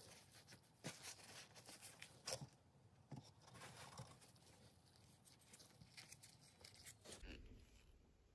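Near silence with faint handling noises: a paper towel rustling and a few small clicks, the sharpest a little over two seconds in.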